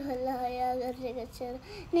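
A young girl's voice drawing out one long, level vowel for about a second, then making a few short vocal sounds.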